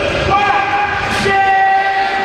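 Long held electronic tones with overtones, stepping to a new pitch about every second like a jingle, over hall crowd noise.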